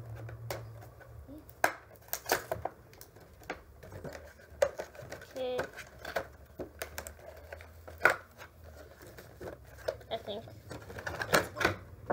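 Scissors snipping and hands working a doll's cardboard-and-plastic packaging: a run of irregular sharp clicks with short rustles and crinkles.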